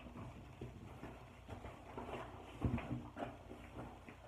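Quiet handling sounds: a few soft knocks and rustles, with one louder thump about two and three-quarter seconds in.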